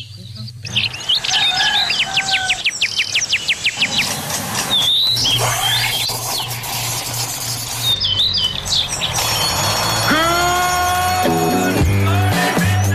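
Birdsong sound effects, chirps and a rapid trill, opening a morning-show theme tune, with a long rising pitched call near the end as the music comes in.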